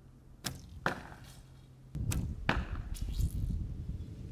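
Wooden recurve bow shot: a sharp snap of the released bowstring about half a second in, and the knock of the arrow striking the target a moment later. Two more sharp knocks follow just after two seconds in, over a low background rumble.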